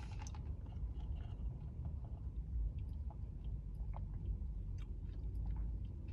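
Chewing tapioca boba pearls after a sip through a straw: many small, scattered wet mouth clicks over a low steady hum.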